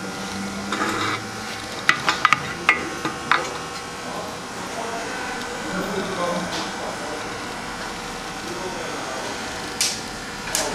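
A few light metallic clicks and taps, bunched about two to three seconds in, as the balance shaft of an EA888 engine is worked out of its bore in the cylinder block by hand and handled. The clicks come from the shaft's aluminium housing and gear.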